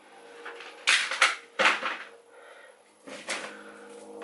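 Groceries being handled and set down: plastic-wrapped meat trays and packaging giving a few short, sharp rustles and knocks, about a second in, just before two seconds, and again a little after three seconds.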